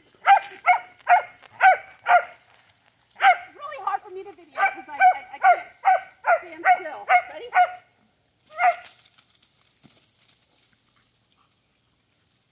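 A dog barking in quick runs of about three barks a second, with a short break between two runs and a single last bark about three-quarters of the way through.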